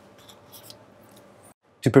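Faint clicks and rustles of lab equipment being handled on a bench, over a low room hum; the sound cuts out about one and a half seconds in and a man's voice begins near the end.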